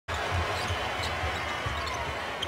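Basketball dribbled on a hardwood court, a low bounce roughly every third of a second, over the steady murmur of an arena crowd.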